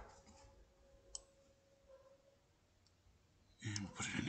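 Near silence with one sharp computer mouse click about a second in and a fainter tick later, over a faint steady hum.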